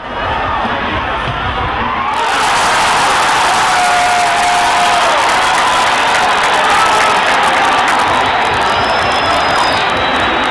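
Football stadium crowd cheering, a dense wash of many voices that swells about two seconds in, marking a goal celebration.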